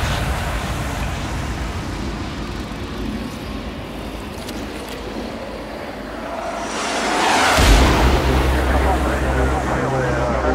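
Hardstyle track in a cinematic break: a low rumbling atmosphere slowly fades. About seven seconds in, a noise sweep rises and a deep held bass note comes in.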